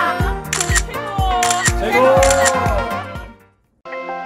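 Background music with a steady beat of about two thumps a second and voices calling out over it. It fades out about three seconds in, and after a brief gap a new music track of sustained tones begins just before the end.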